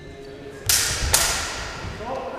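Steel sabres clashing in a fencing exchange: two loud, sharp strikes about half a second apart, each ringing and dying away over about a second.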